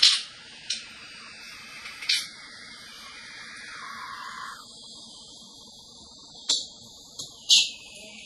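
Mahjong tiles clacking on the table as players draw and discard: about six sharp, separate clacks, with a quick cluster of the loudest near the end.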